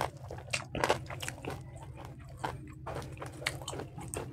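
Close-miked chewing and biting of spicy pork ribs with rice and gravy eaten by hand: a run of irregular sharp clicks and smacks, over a steady low hum.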